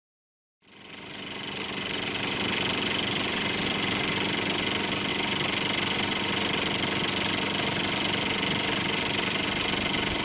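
Film projector running: a steady, fast mechanical clatter of the film transport, fading in over the first two seconds.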